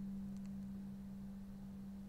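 A steady low hum: a single unchanging tone over faint hiss, with no speech.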